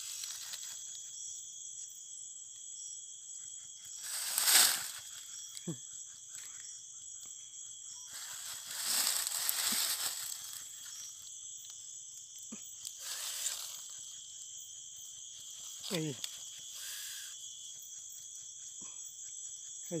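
A steady high-pitched night insect chorus, with dry leaf litter rustling and crunching in bursts as a baby lesser anteater and a hand move in it. The loudest burst comes about four seconds in, with longer ones around nine and thirteen seconds in.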